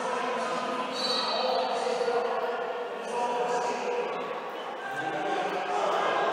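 Roller derby jam in a sports hall: skate wheels rolling and knocking on the court floor, with players and the crowd shouting.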